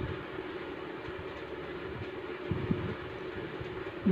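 Hand-milking a Nili buffalo: thin jets of milk squirting from the teats into a steel pot already part-filled with milk, making a steady hiss. A few faint knocks come about midway.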